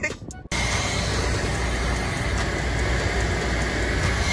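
Steady loud rushing noise of car-wash equipment, cutting in suddenly about half a second in, with a faint high whine held under it.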